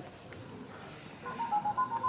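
Electronic beeping tones starting about a second in, a few steady pitches stepping from one to another like a short electronic jingle.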